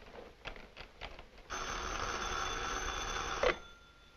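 Desk telephone's bell ringing, one steady ring of about two seconds starting about a second and a half in, cut off suddenly as the receiver is lifted. A few light clicks and knocks come before it.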